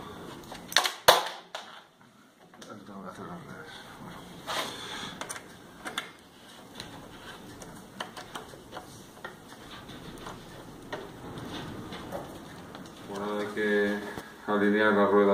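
Metallic clicks and ticks of an 8 mm hex key working a clipless bike pedal's axle tight into an aluminium crank arm. Two sharp clacks about a second in are followed by scattered small ticks of the tool and pedal.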